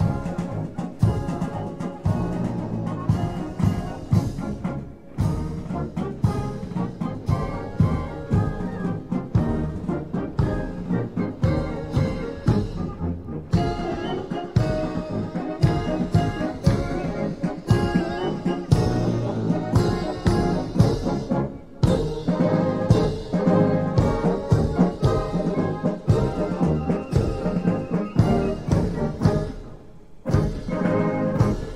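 Finnish military brass band playing a march as it marches past: sousaphones, saxophones, trumpets and percussion on a steady marching beat.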